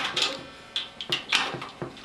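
Socket ratchet working the drive bolt of a knockout punch through a stainless steel kettle wall: several short, irregular clicks as the punch is cranked through.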